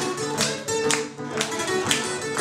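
Two acoustic guitars playing a live blues passage together, picked notes punctuated by sharp percussive strums.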